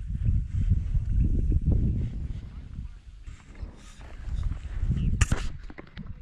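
Uneven low rumbling from a body-worn action camera's microphone being jostled as the camera moves, with one sharp knock about five seconds in.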